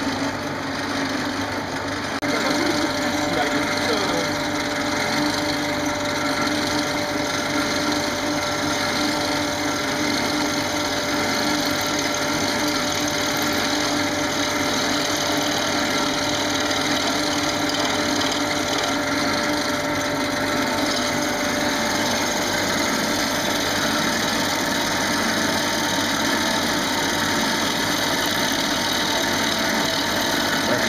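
Wood lathe running with a workshop dust collector, as a bowl gouge cuts into the spinning wood: a steady whir with scraping from the cut. It gets louder about two seconds in, when a steady whine joins and holds.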